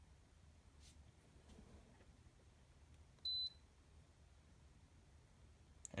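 Near silence, broken about three seconds in by one short, high electronic beep from the Feniex 4200 Mini emergency-lighting controller's keypad.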